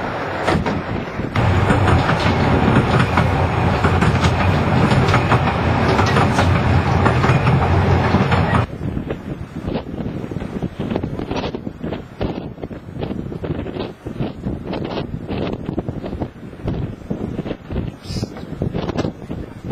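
A narrow-gauge train carriage running along the track, a loud, steady rumble heard from inside the carriage. About halfway through it gives way suddenly to a quieter stretch of short sharp sounds as a small steam locomotive draws near on the neighbouring track.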